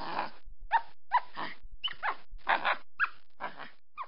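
Recorded monkey calls: one long hoarse call, then a run of short calls, each sliding up in pitch, about two a second, trailing off near the end.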